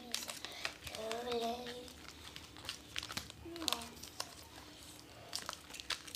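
Foil chewing-gum wrapper crinkling as a stick of gum is unwrapped by hand, a run of small, irregular crackles. A faint voice hums or speaks briefly about a second in.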